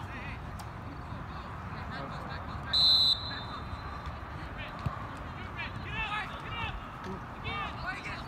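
A referee's whistle, one short blast about three seconds in, over distant shouting voices from the field.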